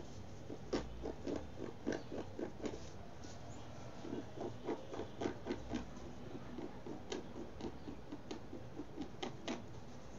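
Fingernails scratching and picking at a DTF transfer print on fabric to lift it off, in short scrapes a few times a second, with quicker runs of scrapes in the middle.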